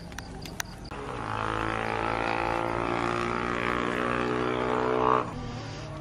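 A steady droning sound made of many tones at once, starting about a second in and stopping sharply about five seconds in.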